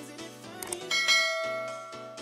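A notification-style bell chime strikes about a second in and rings with several clear tones, fading away, over background music.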